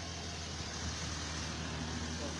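Steady low hum of a running vehicle engine with faint road noise.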